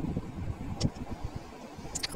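Faint low rumble of background noise, with a short click a little under a second in.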